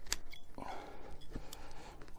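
A few light metallic clicks with soft rustling, as a foot ascender is unclipped and taken off a climbing rope.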